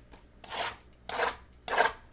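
Shrink wrap on a sealed Bowman Chrome trading-card box being slit and scraped open: three short scraping strokes about half a second apart.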